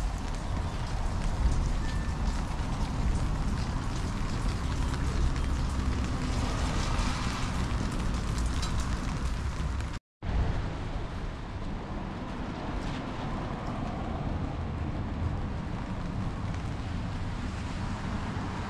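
Steady wet-weather street noise: an even hiss of rain on wet pavement, with wind rumbling on the microphone. The sound breaks off for a moment about ten seconds in, then carries on a little duller.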